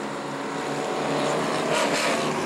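Stock car engine running steadily, a droning hum at an even pitch that grows a little louder.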